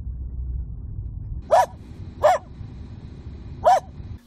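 A low, steady rumble of a car driving gives way about a second and a half in to a small dog barking: three short single barks, the last after a longer pause.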